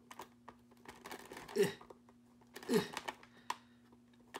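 Faint clicks and scrapes of a small metal tool working at the plastic retaining pieces that hold an action figure in its blister packaging, with a sharp click near the end. Two short effort grunts come in the middle.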